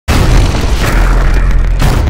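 A loud intro boom sound effect with music. It hits suddenly at the start, stays loud and deep, and begins to die away near the end.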